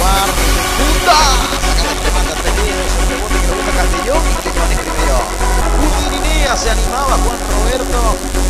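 Electronic dance music with a steady low bass, and a voice heard over it.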